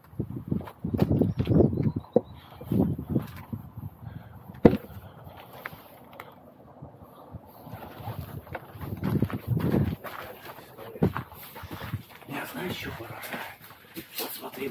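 Rumbling handling noise and footsteps of someone moving quickly while carrying the camera, in irregular bursts, with two sharp knocks, one about five seconds in and one about eleven seconds in.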